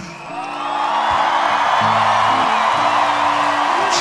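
Live rock band playing with the guitar part taken out: bass guitar notes moving under the mix, and a broad wash of crowd noise that swells up about half a second in and holds.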